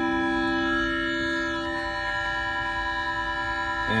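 Omnichord OM-84 electronic chord organ sounding a held C major chord, a steady sustained electronic tone. It is being checked by ear against a keyboard for tuning.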